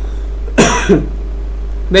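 A man coughs once, about half a second in, over a steady low electrical hum.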